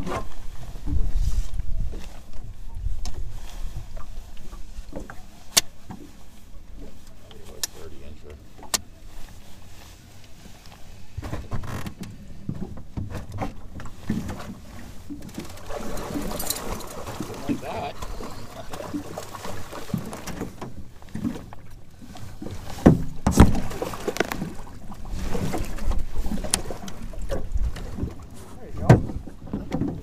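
Lake water splashing and lapping around a small aluminium fishing boat as a fish is landed in a net, with low wind rumble on the microphone in the first few seconds. Scattered clicks and knocks of gear on the boat, with two sharp knocks near the end as the loudest sounds.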